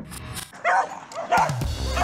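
A dog barking repeatedly in short barks, with background music coming in partway through.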